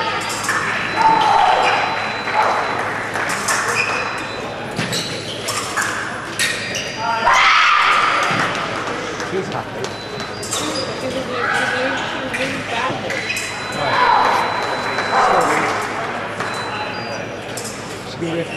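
Indistinct voices echoing in a large sports hall, with repeated sharp metallic clicks and short rings, typical of fencing foil blades striking during a bout.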